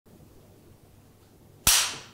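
A film clapperboard snapped shut once: a single sharp clap near the end with a short fading tail, over a faint steady background.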